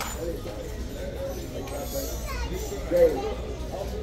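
Indistinct background chatter of people talking, children's voices among them, with one brief louder moment about three seconds in.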